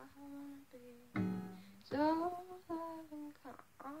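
A woman's voice singing a slow melody without words, to plucked notes on an acoustic guitar; a guitar note rings out about a second in.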